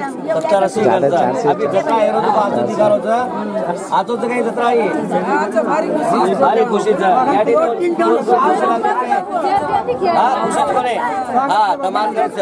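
Several people talking at once: overlapping group chatter, with no single clear voice.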